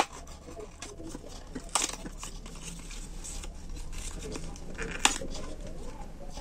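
Cardboard cigarette pack and its foil liner crinkling and rustling as they are handled, pulled and folded. Sharp snaps of the card come right at the start, about two seconds in and about five seconds in.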